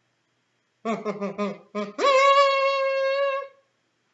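Elephant trumpet imitated on a small blue kazoo: a run of short wavering toots about a second in, then a quick rising swoop into one long, steady high note.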